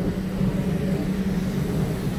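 Flying Galleons ride car running along its elevated track: a steady low rumble with a constant hum.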